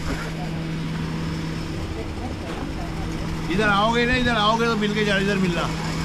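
Steady low hum of an idling engine over street background noise. About halfway through, a voice speaks briefly over it.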